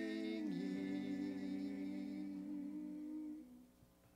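Small mixed church choir holding the final chord of an anthem. The voices step down to a lower chord about half a second in, hold it, and die away a little after three seconds.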